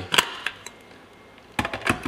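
Short sharp clicks and knocks of an Electrolux ESB7300S blender's lid, filler cap and glass jar being handled: one click just after the start, then a quick run of clicks near the end.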